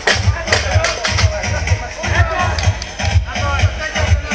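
Electronic dance music with a steady bass beat played over loudspeakers, with crowd chatter.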